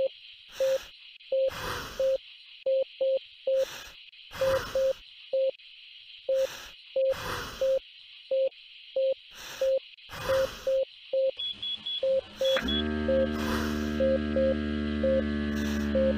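Simulated bedside patient monitor beeping with each heartbeat, about one and a half beeps a second, over a steady hiss and short breathing sounds roughly every second. About twelve and a half seconds in, a few short high beeps sound and a steady motor hum starts: the automatic blood pressure cuff beginning to inflate.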